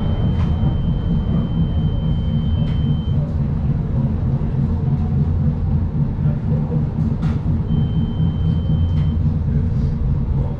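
MARTA rapid-transit rail car heard from inside while running: a steady low rumble. A thin, high steady tone runs through the first few seconds and returns near the end, and a few faint clicks sound.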